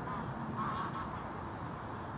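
Faint honking of geese over a low, steady hiss.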